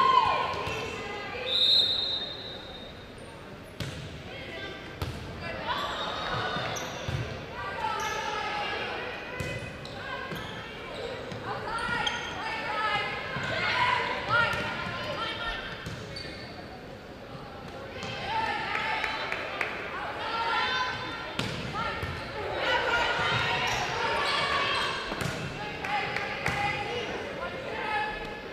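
A volleyball rally in an echoing gymnasium: sharp thuds of the ball being served, passed and hit, over indistinct chatter and calls from players and spectators. A brief high tone sounds about two seconds in.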